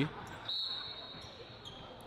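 Basketball being dribbled on a hardwood gym court, heard faintly under the game footage. A thin, steady high tone comes in about half a second in.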